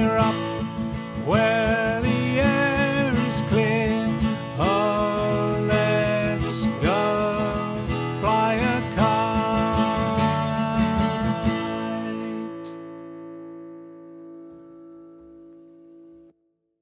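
Acoustic guitar strumming under a sliding, wavering melody line. About twelve seconds in the playing stops on a last chord, which rings and fades away.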